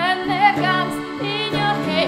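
A woman singing a wavering, vibrato-laden melody, backed by electric guitar and piano accordion holding steady chords in a live band performance.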